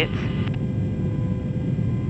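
Steady low rumble of a refuelling tanker aircraft in flight, engine and airflow noise, with a faint steady electronic hum over it.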